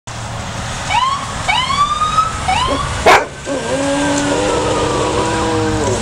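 Golden retriever howling in imitation of a siren: three short rising howls, then one long, steady howl that falls away at its end. A single sharp click sounds about three seconds in.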